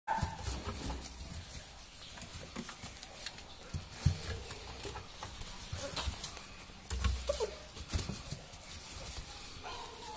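Beagles making a few short cries, among scattered knocks and scuffling.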